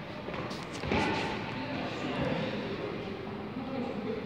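Footsteps on a gym floor, with a few short knocks in the first second, and faint voices in the background.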